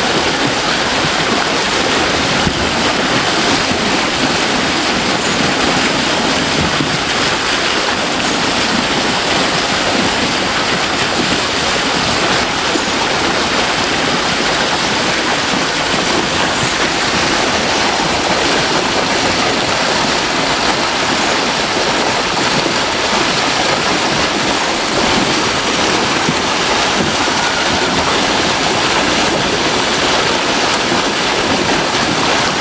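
High water pouring over a wooden weir into a churning pool: a loud, steady rush of falling water.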